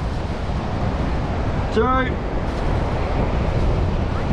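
Steady low noise of wind buffeting the microphone, mixed with the wash of surf on the beach.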